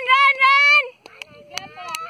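A child's high voice calling out one long drawn-out shout that rises in pitch, holds for about a second and breaks off, followed by quieter scattered clicks and brief voices.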